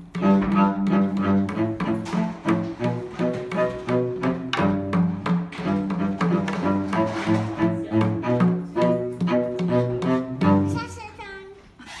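A string instrument plays a rhythmic run of low pitched notes, with short taps on a hand-held lollipop drum struck with a mallet. The music fades out near the end.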